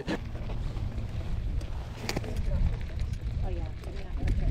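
Low rumble of wind on the camera microphone and tyre noise as a gravel bike rolls along a dirt trail, with a few light clicks and faint, distant voices of hikers.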